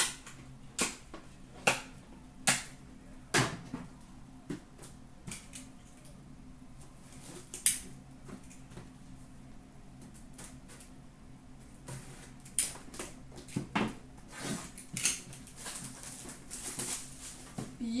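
Sharp separate clicks and taps of trading cards and a sealed tin box being handled and set down on a glass counter, coming faster and closer together in the last few seconds as the box is worked open. A faint steady low hum runs underneath.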